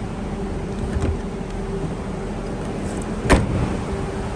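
Boot lid of a Lexus IS250 shut about three seconds in: a single loud thud over a steady hum. A fainter knock comes about a second in.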